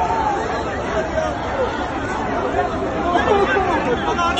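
A crowd of many people talking and calling out over one another, several voices overlapping at once, some of them raised.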